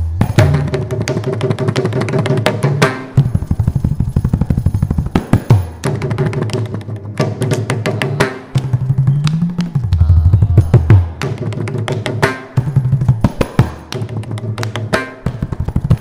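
Mridangam solo in a Carnatic concert: fast, dense rhythmic strokes mixing ringing pitched strokes with deep bass strokes, and a rising bass glide from the left head about halfway through.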